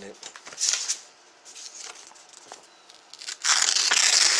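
A plastic DVD case and its paper cover being handled, rustling and scraping: a short rustle about half a second in, then a louder, longer rustle near the end.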